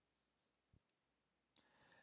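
Near silence, with a single faint click about three-quarters of a second in and a faint brief rustle near the end.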